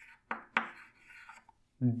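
Chalk writing on a blackboard: two sharp taps of the chalk tip a quarter-second apart, each trailing into a short scratch, then a fainter stroke.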